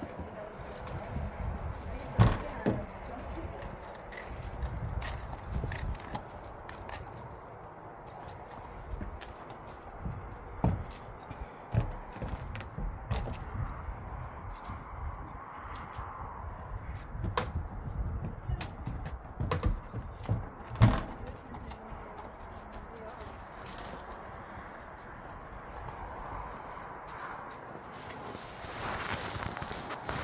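A horse's hooves knocking on a horse box's loading ramp and floor as it is loaded: scattered single knocks, the loudest about 2 and 21 seconds in.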